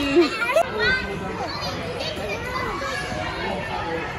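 Children playing: high-pitched squeals and shouts in the first second, then an overlapping hubbub of children's voices.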